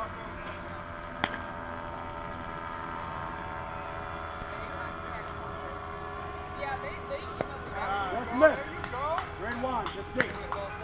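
Players' voices calling out across a softball field, louder in the last few seconds with one loud shout, over a steady background hum. A single sharp knock sounds about a second in.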